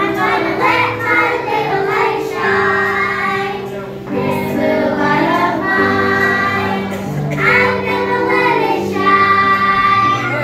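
A group of young children singing a song together, over instrumental accompaniment that holds long, steady low notes.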